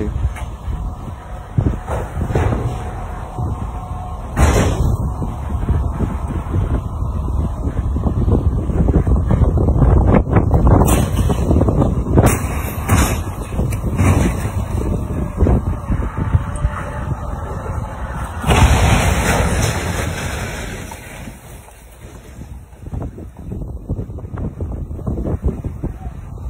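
Car road noise recorded from inside a moving vehicle: a steady low rumble with several sharp thumps and a louder noisy swell about two-thirds of the way through.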